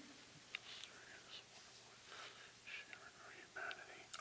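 Faint whispered speech: a man quietly murmuring a prayer, with a couple of light clicks as items are handled on the altar table.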